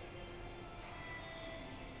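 Steady low rumble of the aquarium's indoor space, like ventilation or pump hum, with a few faint held tones over it.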